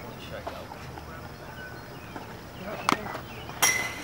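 A pitched baseball arriving: two small clicks, then one loud, sharp impact with a brief metallic ring near the end. Faint spectator voices underneath.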